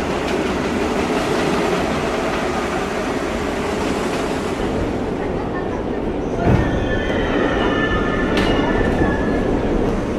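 Subway train running, heard from inside the car: a steady rumble, with a knock about six and a half seconds in. A thin high squeal follows for a few seconds near the end.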